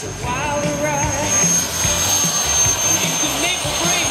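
Homemade gas-turbine jet engine on a go-kart running, a steady high whine with a hiss of jet exhaust that swells about halfway through, heard under music with a voice playing over a loudspeaker.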